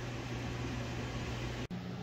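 Steady room background noise: an even hiss with a low steady hum. It breaks off in a brief dropout near the end and resumes with a slightly higher hum.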